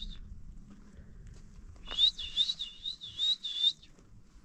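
A bird singing a quick run of repeated high notes, about five a second, starting about halfway in and lasting nearly two seconds.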